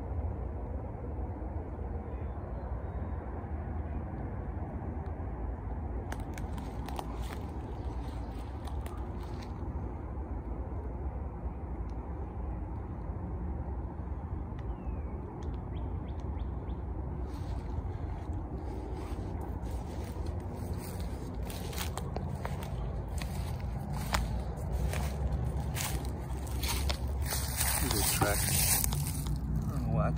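Wind rumbling on a handheld microphone in woodland, with rustling and crackling of leaves, stems and undergrowth being brushed and stepped through. The rustling grows busier and louder in the second half.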